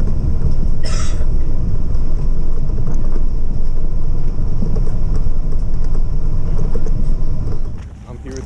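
Loud, steady low rumble of air buffeting the camera's microphone as the camera moves fast through the air, with a short hiss about a second in.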